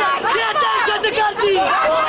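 A crowd of people talking loudly over one another, many voices at once close by.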